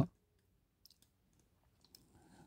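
Near silence after a man's voice cuts off at the very start, with a few faint clicks.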